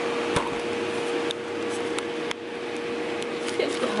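Gold 'N Hot standing hooded hair dryer's blower running with a steady hum and a single steady tone, with a few sharp clicks from its setting dials being handled.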